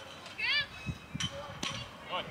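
Children's voices calling out across a youth baseball field. A little over a second in come two sharp knocks about half a second apart.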